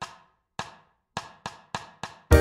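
A backing track's count-in at 208 beats per minute: sharp wood-block-like clicks, two slow then four quick, leading straight into the band.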